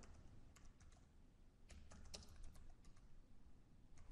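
Faint typing on a computer keyboard: irregular key clicks, with a busier run in the middle.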